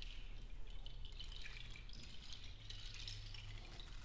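Soft, sparse clicking and rattling, scattered irregularly, over a faint steady low hum that grows a little stronger about halfway through.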